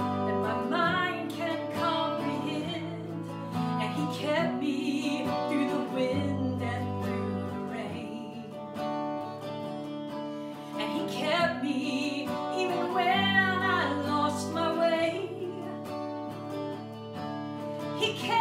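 Hollow-body electric guitar strummed through an amplifier, accompanying a woman singing a slow gospel song.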